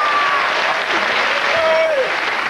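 Studio audience applauding, a dense even clatter of clapping with a few voices rising over it.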